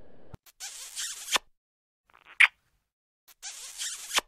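A cartoon kissing sound effect: two hissy smooches about a second long, each ending in a sharp smack, with a short high squeak between them.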